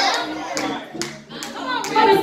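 Hand clapping in a steady rhythm, about two claps a second, along with a voice.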